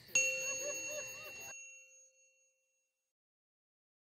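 A single bell-like chime ding that strikes sharply and rings out, fading away over about two seconds, as a logo sting.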